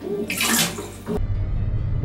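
A man vomiting into a toilet, liquid splashing into the bowl water in one loud burst. About a second in this cuts off abruptly and low, bass-heavy music begins.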